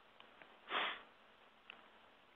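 A man's short sniff, a quick breath in through the nose, about a second in, with a few faint mouth clicks around it.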